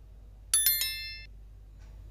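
A bell-ding sound effect, of the kind used with a subscribe and notification-bell animation. It gives three quick bright strikes about half a second in, rings briefly, and cuts off abruptly within a second.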